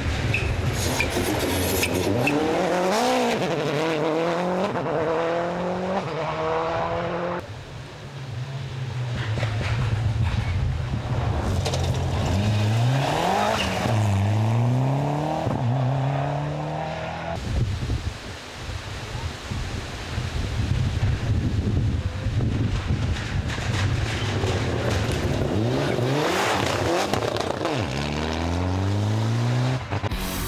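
Rally car engines being driven hard flat out, the pitch climbing and dropping again and again through gear changes, in about three separate passes broken by sudden cuts.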